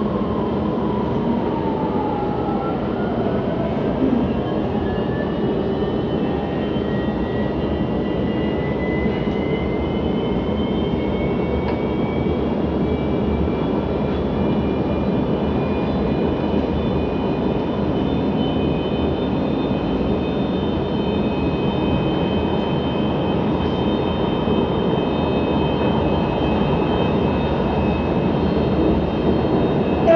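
Inside a CSR Zhuzhou light-rail car pulling away from a station: the traction drive's whine climbs in pitch over the first ten seconds or so as the train gathers speed, then holds at a steady pitch. Under it runs the continuous noise of the train running on the elevated track.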